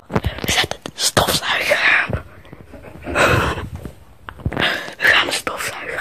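Hushed whispering and breathy voices in several bursts, with sharp knocks and rustles from a phone camera being handled and swung about.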